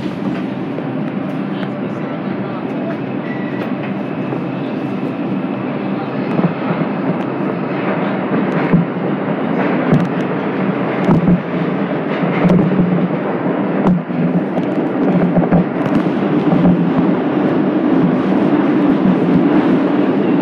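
Bombardier R142 subway train heard from inside the car as it pulls out of the station and picks up speed into the tunnel: a steady rumble that grows louder from about six seconds in, with scattered sharp clicks and knocks from the wheels on the track.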